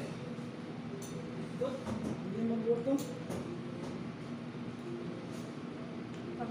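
Brief, indistinct talk over a steady low electrical hum, with a few light clicks of cutlery on plates.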